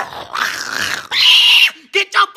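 A person's harsh, rasping vocal noise, rising into a loud scream about a second in that lasts about half a second and breaks off.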